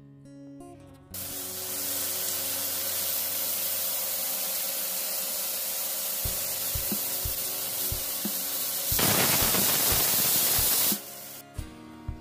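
Marinated chicken breast pieces sizzling in hot oil in a flat frying pan on low flame: a steady hiss that starts about a second in, grows louder about nine seconds in, and cuts off shortly before the end. A few soft low knocks fall midway.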